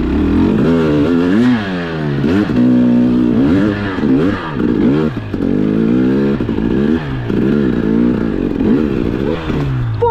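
KTM 300 XC-W TPI single-cylinder two-stroke dirt bike engine revving up and down again and again under load, about once a second, as the throttle is worked on a snowy trail.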